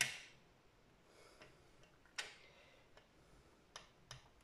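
Clear acrylic stamp block tapping on a plastic ink pad as the stamp is inked: a few faint, sharp clicks, one right at the start, one about two seconds in and another near the end.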